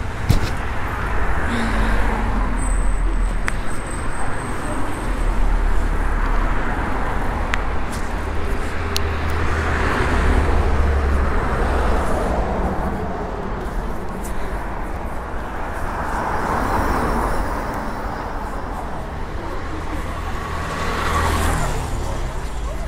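Street traffic noise: cars passing on the road, swelling and fading several times over a heavy low rumble.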